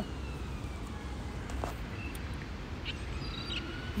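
Outdoor background: a steady low rumble, with faint tones gliding up and down in pitch and a few faint clicks.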